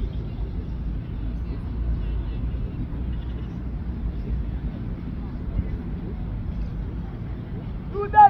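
Outdoor ambience: a steady low rumble of wind on the microphone, with faint distant voices.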